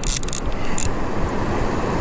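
Steady rushing noise of river water below a dam. Short mechanical clicks from a baitcasting reel in hand come during the first second.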